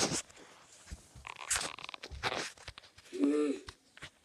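Handling noise: irregular rustles and bumps as the phone filming is swung about and plush toys are moved over carpet, with one short pitched sound a little over three seconds in.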